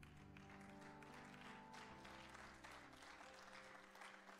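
Faint background music of soft sustained chords, the held notes changing about two seconds in, under light scattered clapping.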